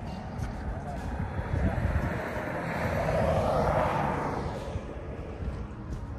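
A vehicle passing by: its noise builds over the first few seconds, peaks about three to four seconds in, then fades away.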